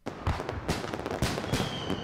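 Aerial fireworks bursting: a rapid, irregular string of sharp crackling pops. A faint high whistle starts near the end and slowly falls in pitch.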